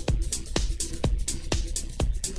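Electronic dance music from a DJ set: a steady four-on-the-floor kick drum at about two beats a second, with hi-hats ticking between the beats.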